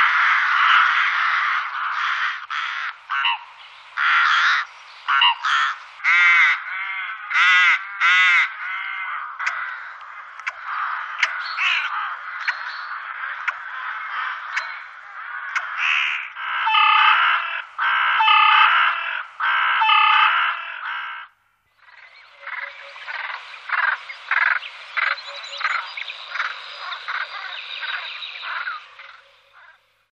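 Rooks cawing: many harsh calls overlap, with a run of evenly spaced caws about one a second around two-thirds of the way through. The sound cuts out for a moment and the calling then resumes more faintly.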